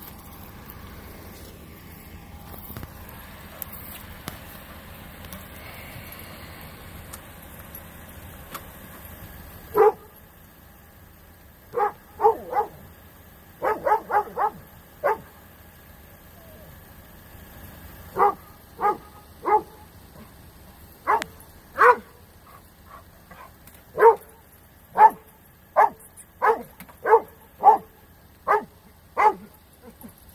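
A dog barking in a long series of short, sharp barks, in runs of roughly one a second, starting about a third of the way in over a low steady background hum.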